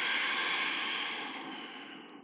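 A woman's long, steady audible exhale, breathed out with the effort of lifting her hips into a yoga bridge, fading away near the end.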